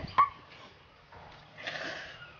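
A woman laughing behind her hand, with a short, sharp, high squeal of laughter just after the start, then a quiet breathy sound near the end.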